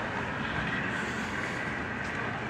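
Steady city street traffic noise: an even rumble of passing cars with a faint high steady whine over it.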